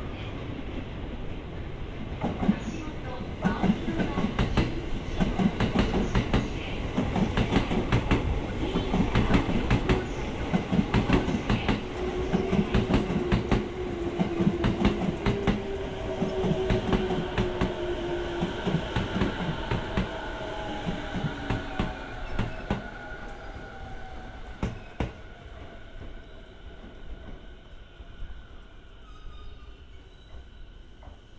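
JR East 209 series electric train pulling into the station and braking to a stop. Its wheels click steadily over the rail joints while its motor whine slowly falls in pitch as it slows, then the sound dies down near the end.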